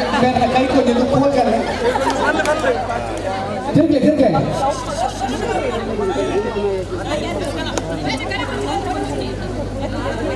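Spectators chattering and calling out, many voices overlapping and growing louder about four seconds in, over a steady low hum.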